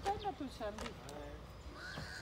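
Faint, distant voices of people talking, in short broken phrases.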